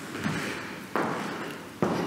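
Footsteps on a wooden parquet floor as people walk from one room to another: three dull steps, about one every 0.8 seconds.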